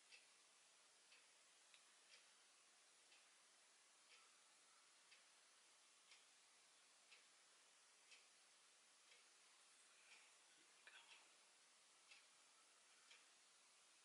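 Near silence: room tone with a faint tick about once a second and a few soft clicks about eleven seconds in.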